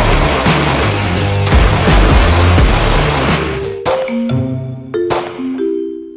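A semi-automatic pistol fired rapidly in a fast string of shots at a steady cadence for about three and a half seconds. Background music with mallet-like notes plays under the shots and carries on alone after they stop.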